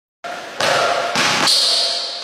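A basketball bouncing and being caught on a hard court floor: three sharp thuds in quick succession.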